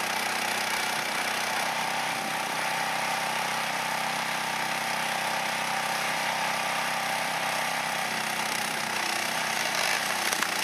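A log splitter's oversized 420cc, 15 HP gasoline engine running steadily, driving a 28 GPM two-stage hydraulic pump while a log is pushed onto the wedge.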